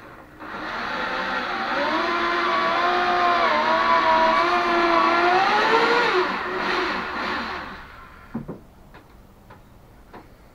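An electric hand drill running for about seven seconds, its pitch wavering with the trigger, then winding down. A short knock follows near the end.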